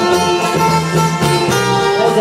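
Live norteño band playing an instrumental passage with no singing: sustained melody notes with guitar over a steady drum beat.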